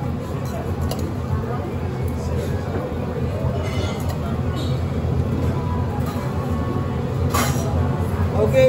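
Restaurant din around a teppanyaki hotplate: a steady low hum, most likely the extraction hood over the grill, under background chatter, with a few light metal clinks and one sharp clink near the end.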